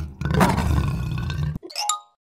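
Lion roar sound effect: one long, rough roar lasting about a second and a half after a brief dip at the start. It is followed near the end by a short, high-pitched rising chirp.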